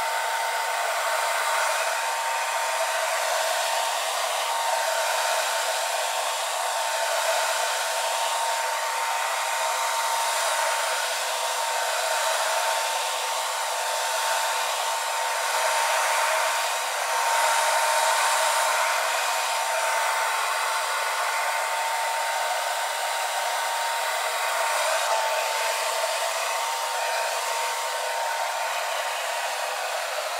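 Handheld hair dryer blowing steadily, a rush of air with a thin steady whine above it. The level swells slightly now and then.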